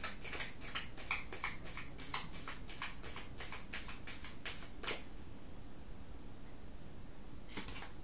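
Tarot cards being shuffled by hand: quick crisp flicks of the cards, about four a second, for about five seconds, stopping, then one short rustle of a card near the end.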